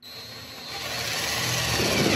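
A cordless impact driver with a magnetic nut driver runs a screw into the thin sheet-steel wall of a 55-gallon drum. The whir starts abruptly and grows steadily louder.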